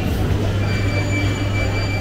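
Steady low mechanical or electrical hum, with a thin high-pitched whine that fades out and back in about halfway through.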